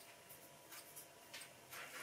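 Near silence: room tone with a few faint, brief handling sounds.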